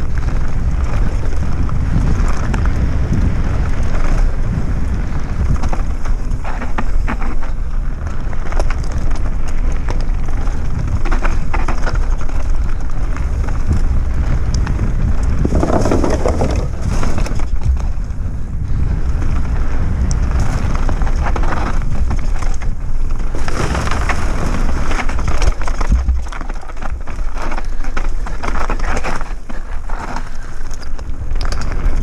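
Mountain bike riding down a dry dirt trail: wind rumbles on the microphone while the tyres crunch over dirt, stones and dry leaves and the bike rattles. About sixteen seconds in, the tyres run over a wooden plank boardwalk.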